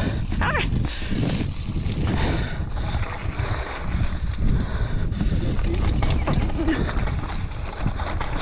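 Mountain bike riding down a rocky, gravelly trail: tyres rolling and crunching over loose stones while the bike rattles over bumps, with a steady rush of wind on the camera microphone.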